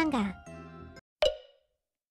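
A cartoon sound effect: one sharp hit with a short ringing tail about a second in, after a few soft notes of background music, then dead silence as the animation cuts to a new title card.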